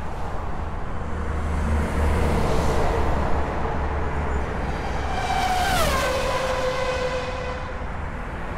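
Steady road-traffic rumble with a vehicle engine passing by about five to six seconds in, its pitch dropping as it goes past.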